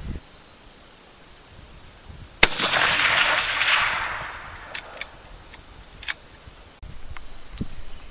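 A single shot from a Winchester Model 94 lever-action rifle in .30-30, firing a 150-grain cast bullet: one sharp crack about two and a half seconds in, followed by an echo that rolls on for about a second and a half. A few faint clicks follow.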